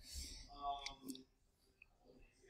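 A boy drawing a hissing breath through clenched teeth, then letting out a short high whimper, with a couple of sharp clicks: a pained reaction to the burn of an extremely hot chip.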